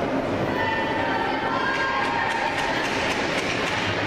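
Indoor ice rink ambience: a steady noisy hum of the arena, with a quick run of light clicks and scrapes from skates and sticks on the ice in the second half.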